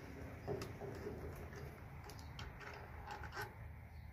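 Faint clicks and scrapes of a Phillips screwdriver turning a screw out of a string trimmer's plastic guard.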